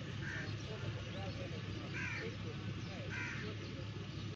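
A bird calling three times, each call short and about a second or more apart, over faint background voices and a steady low hum.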